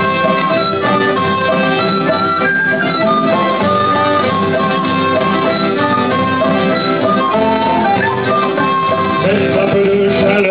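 Instrumental break in a folk sea-song: acoustic guitar accompaniment under a held, stepping melody played on a small wind instrument.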